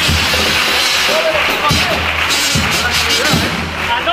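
Carnival chirigota band playing an instrumental passage: Spanish guitars with beats on the bass drum spread through it, over a constant background of hall noise.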